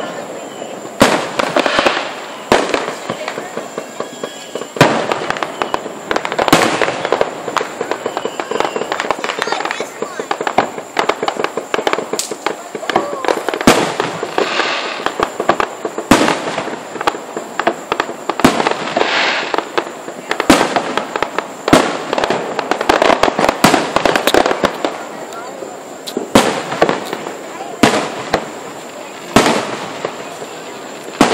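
Aerial fireworks bursting, a loud sharp bang about every one to two seconds, with stretches of crackling between the bangs.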